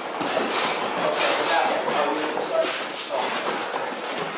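A karate class drilling kicks and punches together: a continuous jumble of cotton uniforms snapping and rustling, bare feet on the mats, hard breathing and scattered voices.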